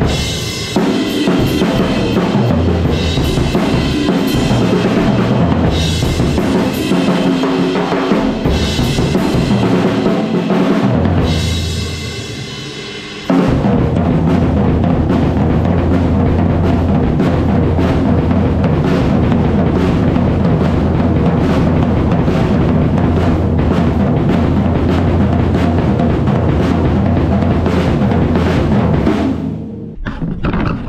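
An acoustic drum kit played hard, with snare, toms, bass drum and cymbals in a busy groove. About eleven seconds in, the playing thins and dies away. It then comes back suddenly with a dense, fast passage that runs until near the end.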